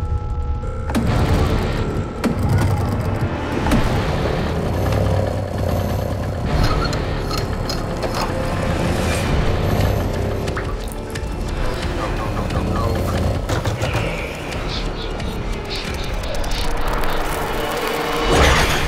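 Dark horror-film score with a heavy low rumble and scattered booming hits.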